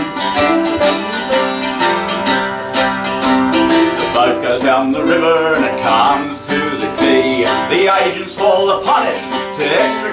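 Mandolin and archtop acoustic guitar playing a folk song between sung lines, the guitar strummed in a steady rhythm. A man's singing voice comes in during the second half.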